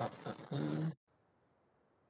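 A man's voice hesitating, 'uh, uh', in the first half, then near silence.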